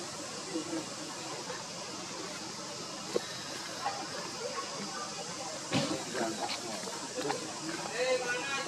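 Outdoor background of a steady hiss with faint, indistinct human voices. There is a sharp click about three seconds in and a thump just before six seconds.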